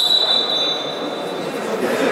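A steady high-pitched tone, like a long whistle, held for almost two seconds and stopping near the end, over the murmur of voices in a sports hall.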